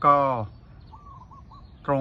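A bird calling faintly: a short run of about four brief notes in a pause between a man's words.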